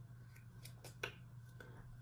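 A few faint clicks as a Kat Von D blotting powder compact is handled and snapped open, the one about a second in a little louder.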